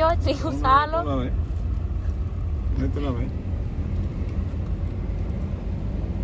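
Steady low rumble of a car's engine and road noise heard from inside the cabin, with a voice in the first second and a brief one about three seconds in.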